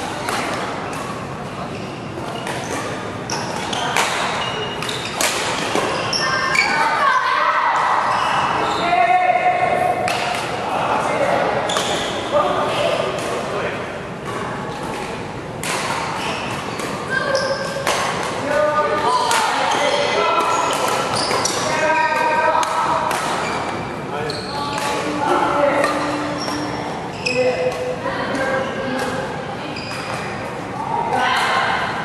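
Doubles badminton play in a large indoor hall: repeated sharp racket hits on the shuttlecock and players' footfalls on the court, with voices talking throughout.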